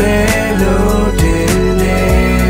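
Male vocalist singing in Burmese over a produced backing track with a steady beat and bass.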